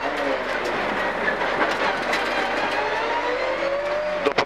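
Mitsubishi Lancer Group N4 rally car's turbocharged four-cylinder engine, heard from inside the cabin under hard acceleration. The engine note climbs steadily in pitch through the second half.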